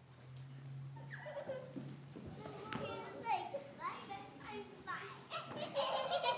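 Young children's high-pitched voices chattering indistinctly, louder near the end. A low steady hum stops about two seconds in.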